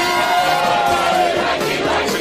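A crowd of people singing together, drawing out the last line of a song slowly. The voices hold one long note that slides down near the end.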